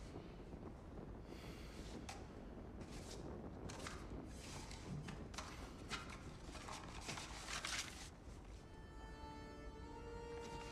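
Faint, irregular rustling and shuffling of handling sounds, then soft sustained music notes come in near the end.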